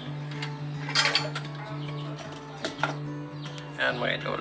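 Background music with sustained low notes, broken by a few sharp knocks about a second in and again near the three-second mark.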